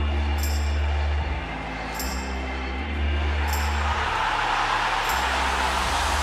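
Low, sustained bass music with a sharp high tick about every second and a half, while an arena crowd's cheering swells up loudly over the second half.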